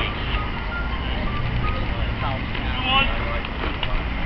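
Steady wind rumble on the microphone, with distant voices calling out now and then, loudest about three seconds in.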